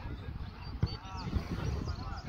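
Geese honking, several short calls in a row, over a low wind rumble on the microphone.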